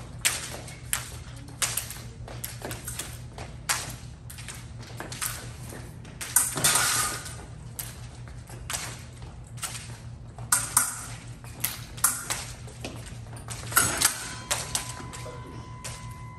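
Epee fencing bout: quick footwork stamps on the piste and the metal blades clicking and clinking against each other, with a longer, louder clash a little before the middle. About a second before the end a steady electronic tone from the scoring machine starts, signalling a touch.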